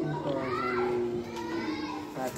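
Human voices, overlapping, with some long held notes and pitches gliding up and down; no plucked strings are heard.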